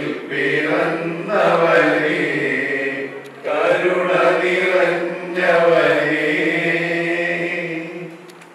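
A man singing a slow song into a handheld microphone over a hall's loudspeakers, holding long notes in phrases with short breath pauses. The last phrase dies away near the end.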